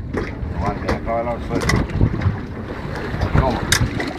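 Wind buffeting the microphone on a small open boat at sea, with a steady low rumble, faint voices in the background and two sharp knocks, one under two seconds in and one near the end.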